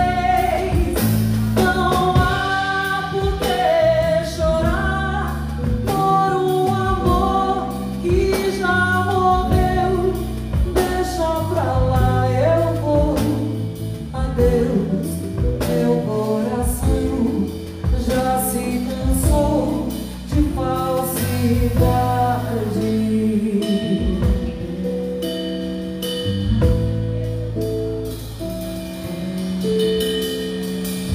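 Live band performance: a woman singing a melody, accompanied by guitar and a drum kit.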